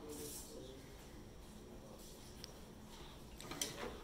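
Faint clicks and small metal knocks of two wrenches working a table saw's arbor nut as it is tightened on a dado stack, with a short cluster of sharper clicks near the end.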